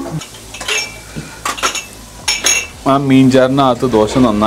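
Stainless steel plate and bowls clinking: about four light metal clinks, each with a short ring, over the first three seconds.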